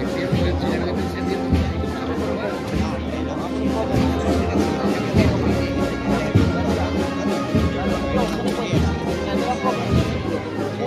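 Processional band music: brass and wind instruments playing a Holy Week march, with sustained chords over a low bass line and occasional heavy drum beats.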